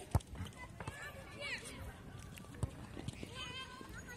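Faint, distant voices of youngsters calling out during a football game, with a sharp thump of a ball being kicked just after the start and a few lighter knocks later.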